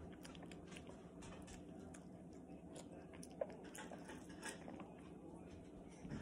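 A Chihuahua chewing wet dog food taken from fingers, faint, with scattered small wet clicks of its mouth and teeth.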